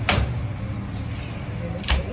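Long fish knife cutting a fillet from a large fish on a plastic cutting board, with two sharp knocks against the board, one at the start and one near the end, over a steady low hum.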